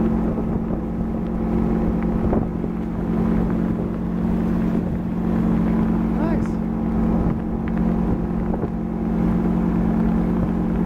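Tow boat's motor running steadily at towing speed, a constant drone, with the wake water rushing behind the boat.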